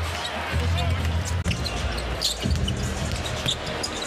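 Live basketball game sound: crowd noise in the arena with a basketball bouncing on the hardwood court and scattered short knocks.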